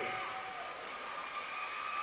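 An audience member holding a high, steady whistling note, heckling the comedian, over the background noise of a crowded hall.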